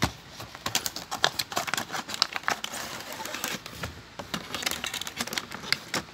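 Clear plastic toy packaging crinkling and crackling with many quick irregular clicks as it is handled, busiest in the first few seconds.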